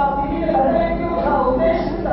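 Yakshagana singing: a voice holding and bending sung notes over a steady drone.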